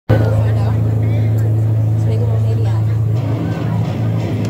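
A loud, steady low drone from the band's amplified gear on stage, with people's voices over it; a little after three seconds in, the rock band starts playing.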